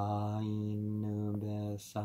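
A man's voice chanting words on one held, almost unchanging low pitch, intoning a verse of the Quran, with a brief break about one and a half seconds in.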